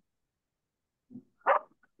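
A dog barking once, briefly, about a second and a half in, with a fainter short sound just before it; the first second is near silence.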